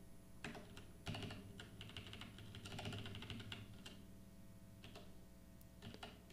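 Computer keyboard typing: faint, irregular keystrokes, coming in a quick run through the first few seconds and thinning out toward the end.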